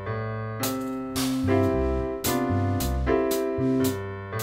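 A piano line played alone on a keyboard: chords over low bass notes, a new chord struck about every half second to a second and ringing into the next.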